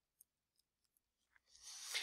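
Near silence with a few faint computer-keyboard keystrokes as digits are typed, then a soft breath near the end.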